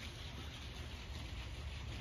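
Faint, steady outdoor background noise with a low rumble underneath.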